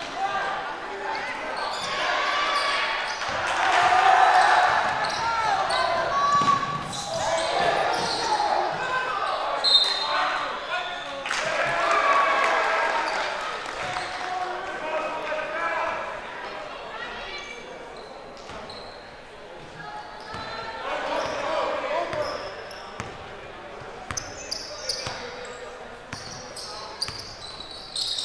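Live basketball game in a gymnasium: players' and spectators' voices calling out, with a basketball bouncing on the hardwood court and short sharp knocks, all echoing in the large hall. The voices are loudest around 4 and 12 seconds in, and quieter around 18 to 20 seconds.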